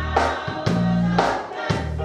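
Gospel praise singing by a small choir backed by a live band, with drums hitting about twice a second over a bass line.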